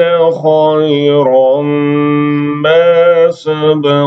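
A man reciting the Quran in melodic tajweed style, drawing out long held notes with slow turns of pitch and a short breath break about three and a half seconds in.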